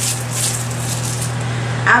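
Rustling and handling noise as makeup brushes are picked through, heaviest in the first second, over a steady low hum.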